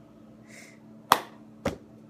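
Cup-game rhythm played with hands and a cup on a tabletop: a soft brushing scrape about half a second in, then a sharp hit about a second in and a lighter one half a second later.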